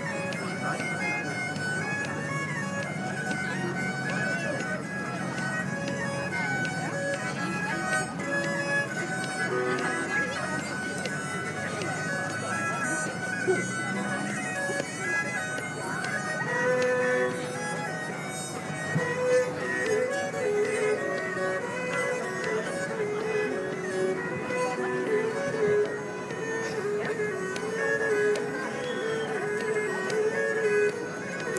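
A Hardanger fiddle ensemble playing a lively Norwegian folk dance tune. Someone whoops and laughs about halfway through.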